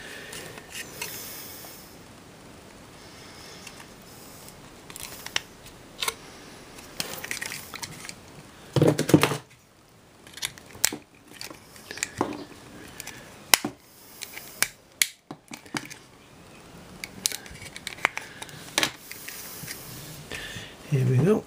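Plastic camcorder casing being forced apart by hand: scattered clicks, scrapes and small cracks of plastic, with a louder burst about nine seconds in.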